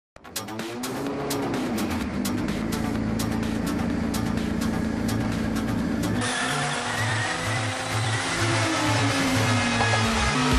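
Intro sound effects: a revving engine, its pitch rising then holding, with rapid crackling, over a pulsing beat. About six seconds in the crackle stops and it gives way to electronic music with a steady low beat.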